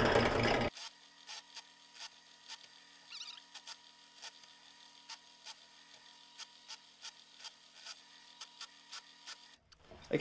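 A louder sound cuts off abruptly under a second in. What follows is near silence, with a faint steady hum and soft, scattered ticks.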